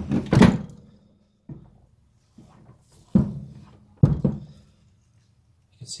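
Knocks and clunks of a Classic Mini's metal rear hub and brake backplate assembly being shifted and turned over on a workbench. The loudest knock is right at the start, and a few more follow about 1.5, 3 and 4 seconds in, some with a short low ring.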